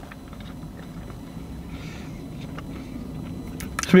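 A person chewing a mouthful of sandwich, with faint scattered mouth clicks over a low steady background hum.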